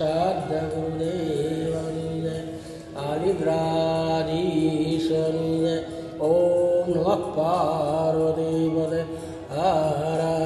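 A man's voice chanting a devotional Hindu mantra in a drawn-out, sung tune, in phrases of about three seconds with short breaks between them.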